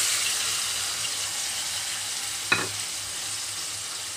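Tomato wedges sizzling in hot oil in an aluminium kadai, the sizzle gradually dying down as they settle. A single sharp clink comes about two and a half seconds in.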